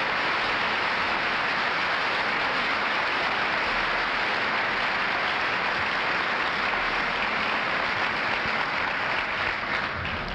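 Large audience applauding steadily, easing off slightly near the end.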